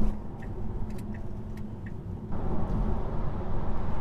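Road and tyre noise inside the cabin of a moving Tesla Model 3 Performance, an electric car with no engine note, with a few faint ticks. The noise grows louder a little past halfway.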